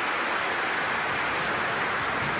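Audience applauding steadily, an even clatter of many hands.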